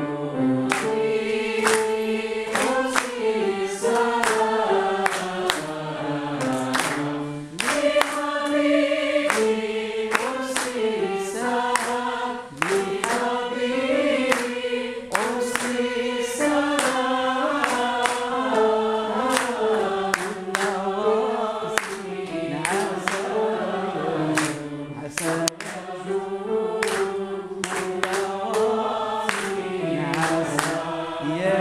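A choir singing a Moroccan Andalusian song in unison, with sharp, regular percussive strokes keeping time.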